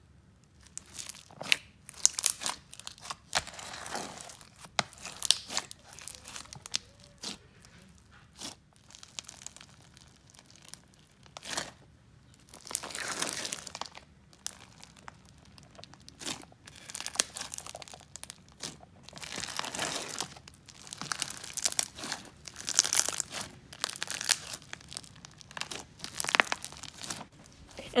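Crunchy slime packed with tiny foam beads being stretched, folded and squished by hand, giving dense irregular crackling, popping and crinkly tearing sounds in spells with short pauses.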